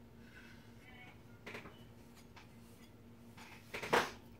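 Small objects handled on a craft table: a few soft taps and a sharper click near the end, over a faint steady hum in a quiet room.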